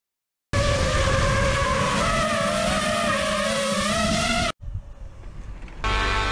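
A loud, engine-like drone whose pitch wavers slightly, over a rushing noise. It starts about half a second in and cuts off suddenly about four and a half seconds in.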